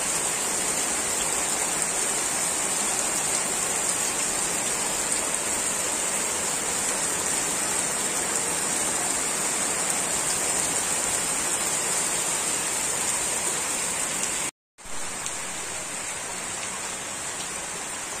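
Heavy rain falling steadily, a dense even hiss. About 14.5 seconds in it cuts out for a moment, then carries on slightly quieter.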